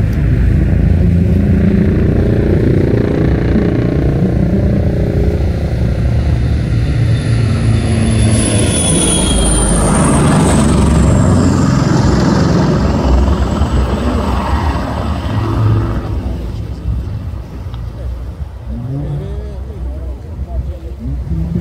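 A loud, low engine rumble with a high whine that slides down in pitch about halfway through; the rumble eases off from about sixteen seconds in.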